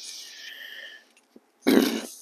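A man breathing in for about a second, a faint airy sound, followed by a small click and then his speech resuming near the end.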